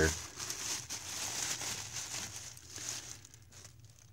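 Plastic trash bag rustling and crinkling as it is handled and folded back by hand, thinning out near the end.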